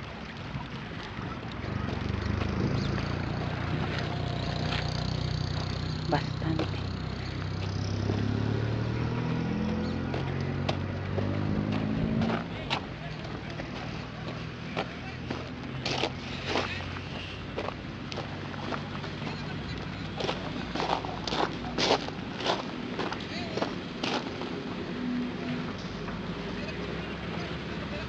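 A motor vehicle's engine running for several seconds, its pitch rising toward the end as it speeds up. After it fades, a series of sharp clicks and knocks.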